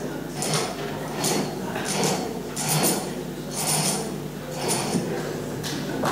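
Stage curtain being drawn open, its runners rasping along the overhead track in a series of pulls, about one a second.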